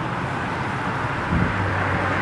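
A motor vehicle's engine humming steadily on the street, growing louder about three quarters of the way through, with wind noise on the microphone.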